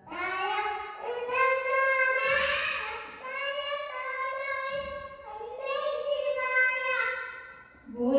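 A small boy chanting a shloka in a sing-song voice into a microphone, in long held phrases.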